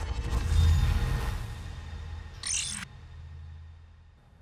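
Title-card transition sound effect: a swelling whoosh into a deep bass hit that slowly fades, with a short burst of digital glitch noise about two and a half seconds in.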